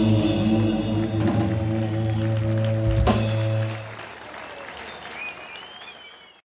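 Live instrumental surf-rock band (electric guitars, bass guitar and drum kit) holding a final ringing chord over drum rolls, ending on a last hit about three seconds in. The music then drops away and the audience applauds, with a short rising whistle near the end.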